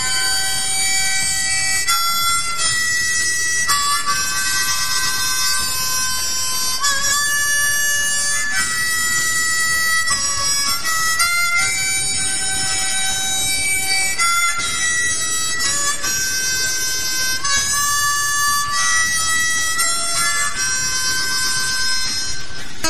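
Harmonica playing sustained notes that change every second or so, the instrumental opening of a recorded blues song.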